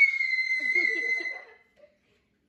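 A boy's long, high-pitched scream held on one steady note, tailing off about a second and a half in, with faint voices underneath.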